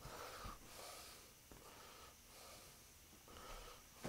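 Near silence, with faint breathing and the soft rustle of damp, acid-soaked cloth rags being peeled off steel sheets and bunched in the hands.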